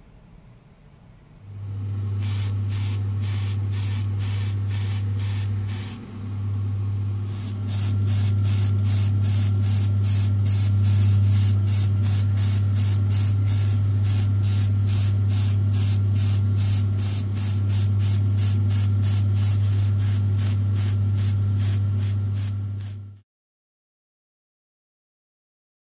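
Short hissing bursts of spray paint, about two a second, over a steady low motor hum, from black paint being sprayed onto a small plastic scale-model wheel. The hum starts a second or so in, and everything cuts off suddenly near the end.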